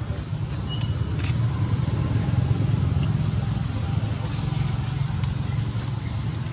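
A steady low rumble throughout, with a few faint clicks and a brief high chirp about a second in.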